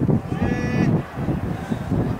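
A single drawn-out shout from a person, held for about half a second a little before the middle, over steady low background noise.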